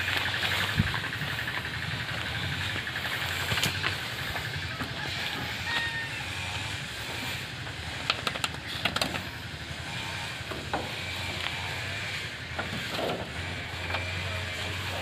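Goats browsing on a pile of fresh leafy branches: leaves rustling and twigs snapping now and then as they pull and chew, over a steady low hum.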